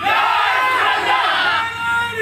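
A qawwali singer's amplified voice drawing out long, wavering notes over a public-address system, with crowd noise behind it.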